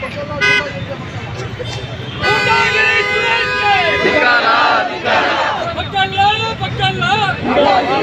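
A vehicle horn sounds one steady held blast of about two seconds, a couple of seconds in, over a crowd of protesters. From about the middle on, the crowd shouts slogans.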